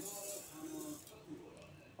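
Granulated sugar pouring from a plastic measuring cup into a stainless-steel mixer-grinder jar: a soft hiss of grains falling on metal that fades out about a second in.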